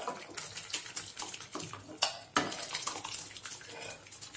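A metal spoon scraping and knocking against a steel pressure cooker pot as thick cooked dal is tipped out into a pan of sambar, with soft wet splats as it lands. Irregular clinks and scrapes, the sharpest knocks about two seconds in.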